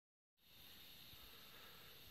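Near silence: dead quiet for a moment at the very start, then only a faint, steady background hiss.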